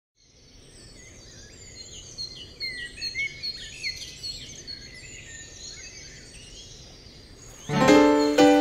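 Several birds chirping and calling in quick, overlapping short chirps and slurred whistles over faint outdoor ambience, fading in from silence. Near the end, guitar music comes in loudly.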